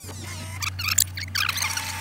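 Tape-rewind sound effect: a steady low hum under fast, sweeping high squeals and chirps, with a steady higher tone joining about one and a half seconds in.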